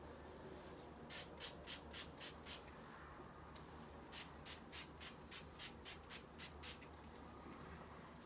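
Faint, quick swishing strokes, about four a second, in two runs: a short run starting about a second in and a longer one from about four seconds to nearly seven.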